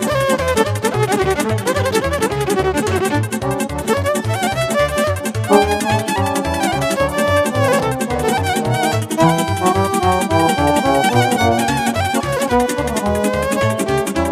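Violin playing a fast Romanian folk dance tune (hora or sârbă style party music), with a band accompaniment keeping a steady, driving beat in the bass.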